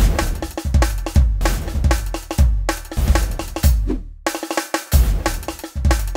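A drum kit playing a loud, busy pattern of deep bass drum hits, snare strikes and cymbals.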